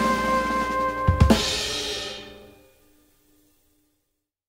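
The closing chord of a swing jazz band, held over drum kit hits and a cymbal crash about a second in, then dying away to silence within about three seconds.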